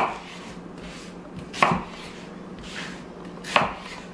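Kitchen knife chopping through peeled sweet onions onto a cutting board: three sharp chops, near the start, about a second and a half in and near the end, with a faint steady hum underneath.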